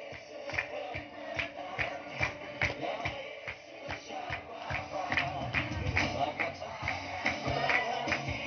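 Music with a steady beat and tambourine jingles struck in time with it, about two or three hits a second.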